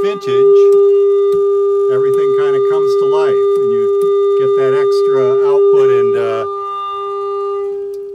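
Steady mid-pitched test tone with buzzy overtones, a clipped, flat-topped wave from a Quilter Tone Block 202 solid-state guitar amplifier in its Vintage setting, played through a guitar speaker. The tone drops in level about six and a half seconds in.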